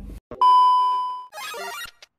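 A single bright ding sound effect: one steady bell-like tone that fades away over about a second, followed by a short, quieter burst of jumbled electronic sound.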